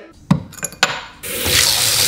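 Water from the hand-shower spout of a floor-standing bath mixer running into a freestanding bathtub. It is turned on about a second in, after a few light knocks, and then runs loud and steady.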